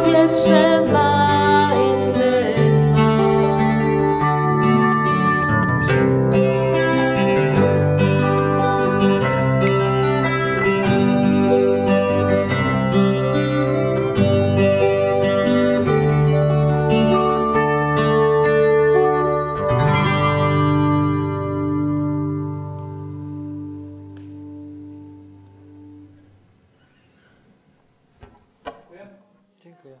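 Live acoustic-band instrumental outro: acoustic guitar strumming and picking, bass guitar and keyboard piano playing together. About twenty seconds in, a final chord is struck and rings out, fading away over several seconds. A few faint small knocks follow near the end.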